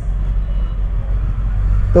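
Low, steady engine hum of street traffic, with a faint hiss of background noise above it.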